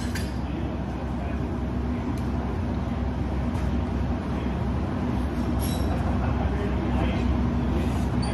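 Steady low rumble and hum of a large hall, with a few faint knocks from the longsword sparring.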